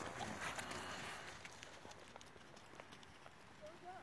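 Horse's hooves striking the sand of an arena at a trot, soft scattered hoofbeats that grow fainter as the horse moves away.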